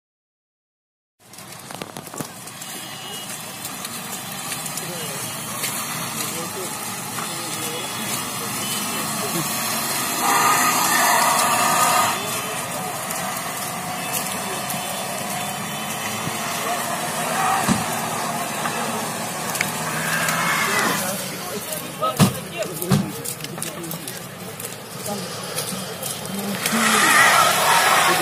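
Busy street ambience on a slushy, snow-covered road: cars moving through the slush and people's voices, with a few sharp knocks about two-thirds of the way in. The sound starts about a second in, after silence.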